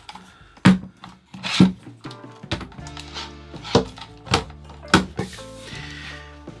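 A PIHER one-handed bar clamp, a nylon-jawed clamp on a steel bar, being handled: about seven sharp clicks and knocks from its mechanism and from contact with the wooden table. Steady background music plays underneath.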